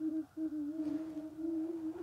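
A single voice humming or moaning one long, slightly wavering note, with a brief break about a third of a second in. It is an eerie sound that the men take for someone crying.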